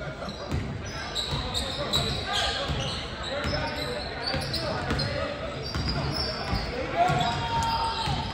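A basketball being dribbled on a hardwood gym floor, repeated thumps echoing in a large gym, with spectators' voices talking over it.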